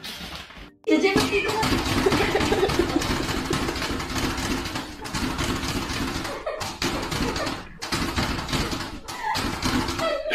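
Indistinct human voices talking, dense and continuous over a noisy background, with no clear words.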